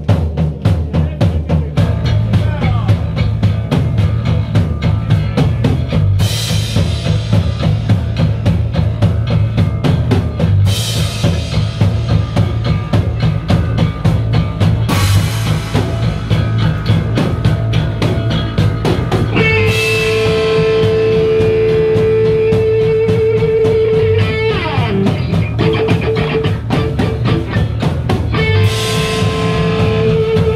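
Punk rock band playing live without vocals: a fast drum kit beat with a cymbal crash every few seconds, under bass and electric guitars. From about two-thirds of the way through, a guitar holds a long high note with a wavering pitch, breaks off briefly and comes back near the end.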